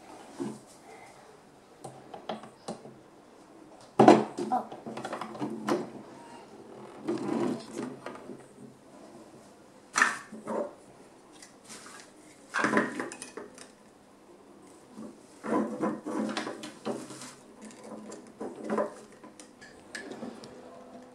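Irregular clicks and clatters of hard plastic toy-house parts being handled and snapped together, with some crinkling of plastic wrapping; the loudest clatter comes about four seconds in.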